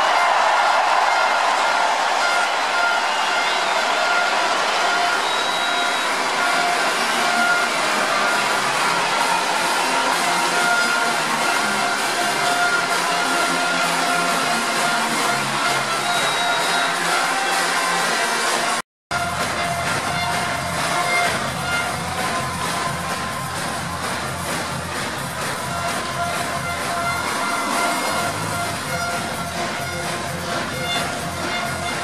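Music played over a stadium's loudspeakers above a large crowd, which is cheering loudly at the start. The sound drops out completely for an instant about two-thirds of the way through, at an edit, and the music comes back with more bass.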